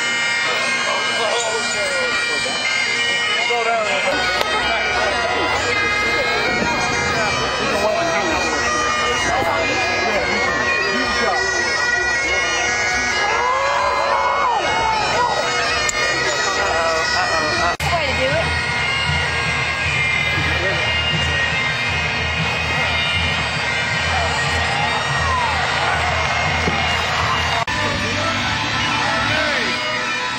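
Highland bagpipes playing, their steady drones sounding throughout under the melody, with voices of a crowd mixed in.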